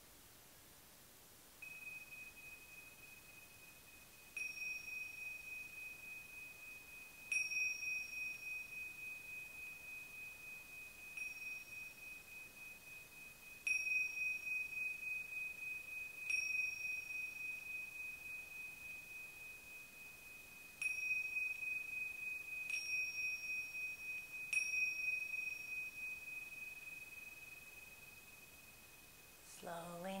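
Tingsha, a pair of small Tibetan hand cymbals, struck together about nine times at uneven gaps of two to four seconds, each strike leaving a long, clear, high ringing tone that fades slowly into the next. The chimes mark the end of the final relaxation (savasana).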